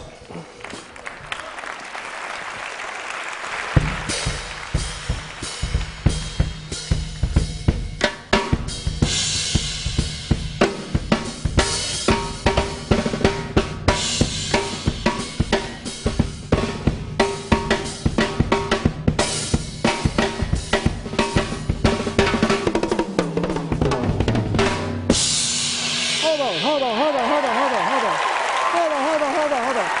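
Acoustic drum kit played live: it starts softly and builds for a few seconds, then a steady driving beat of bass drum, snare and cymbals, with a fill falling in pitch near the end. The drumming stops about 25 seconds in and an audience cheers and applauds.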